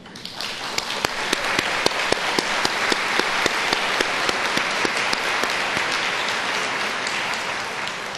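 A large audience applauding, some single claps standing out sharply; it builds up in the first second and tapers off near the end.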